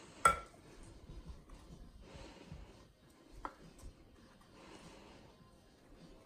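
Plastic ladle stirring punch and sherbet in a glass punch bowl: a sharp knock against the glass about a quarter second in, a couple of lighter clinks later, and faint stirring in between.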